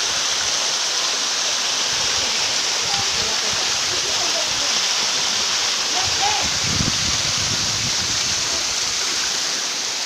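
A small waterfall's rushing water, a loud, steady hiss that does not change, with a few faint voices under it.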